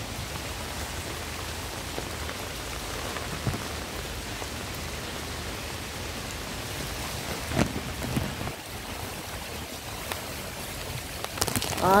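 Heavy hurricane rain falling steadily on flooded, puddled ground, with a couple of faint knocks about midway and near the end.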